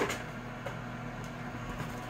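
Steady low electrical hum from a running kitchen appliance, with a few faint crinkles as the frozen pizza's plastic wrap is handled.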